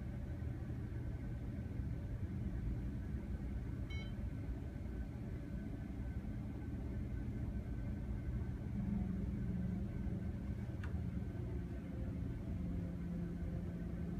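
Steady low rumble of jet airliner engines on the airfield, swelling a little in the second half. A short electronic beep comes about four seconds in, and a faint click near the end.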